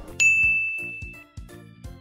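A single bright, bell-like ding about a quarter of a second in, ringing out and fading over about a second, over light background music with a steady beat.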